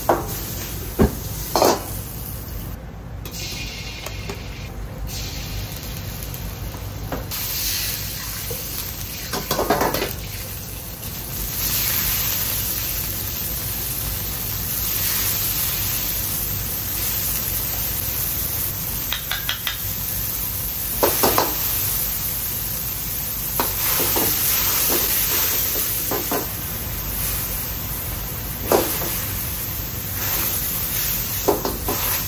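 Sauce and tofu sizzling in a steel wok over a high-heat gas burner, with the burner running steadily underneath. A metal ladle scrapes and stirs in the wok and knocks sharply against it several times.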